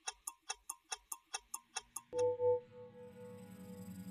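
RTHK's closing ident music. It opens with a run of clock-like ticks, about five a second, which stop about two seconds in, where a bell-like chime strikes twice and rings on over a sustained low pad.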